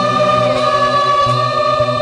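Singing in a Tamil song cover: a long held vocal note over sustained keyboard chords and a pulsing bass line.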